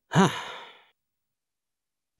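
A single short voiced sigh, "haa", with the pitch rising and then falling.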